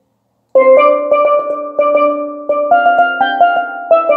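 Low tenor steelpan playing a single-line melody of struck, ringing notes, starting about half a second in. Many notes repeat at one pitch, then the line steps up near three seconds and falls back just before the end.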